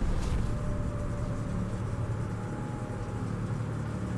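A low, steady rumbling drone from the animated episode's soundtrack, a sci-fi effect that cuts in suddenly with a brief hiss at the start and then holds, with a faint thin hum above it.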